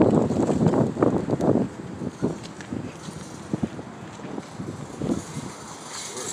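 Wind buffeting a phone's microphone while walking outdoors, heavy rumbling gusts for the first second and a half or so, then a lower steady rush with a few faint taps.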